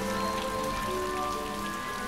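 Steady rain falling on paving, with soft background music over it: a slow melody of held notes.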